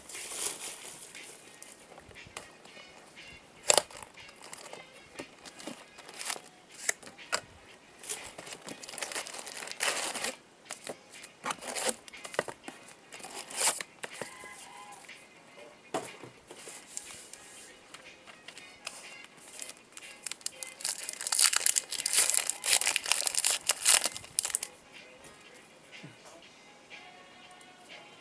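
Trading-card pack wrappers and box packaging crinkling, rustling and tearing as packs are pulled out and opened by hand. The rustles come in irregular bursts of sharp crackles, with the loudest, longest stretch of crinkling near the end.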